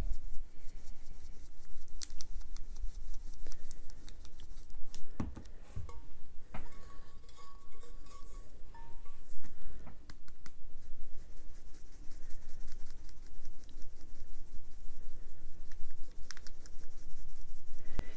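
Chunky glitter shaken from a shaker bottle, rattling and pattering in a dense run of tiny ticks onto paper and a Mod Podge-coated stainless steel tumbler, with a few louder clicks.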